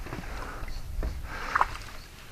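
Hooked bass splashing at the water's surface while being reeled in, a few short irregular splashes with the loudest about one and a half seconds in.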